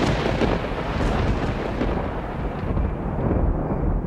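Storm sound: a loud, thunder-like rumbling rush that breaks in suddenly and carries on, its hiss fading toward the end while the low rumble stays.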